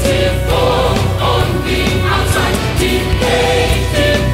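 Symphonic metal music: choir voices singing long held notes over drums and the full band.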